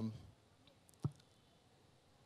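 A man's voice trails off, then a pause of near silence broken by a single short click about a second in, with a couple of fainter ticks around it.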